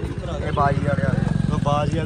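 Untranscribed voices of people talking over an engine running nearby with a fast, even low throb.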